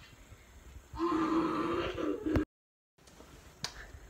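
A child's voice making a drawn-out, wordless growl lasting about a second and a half, cut off abruptly by a half-second of dead silence.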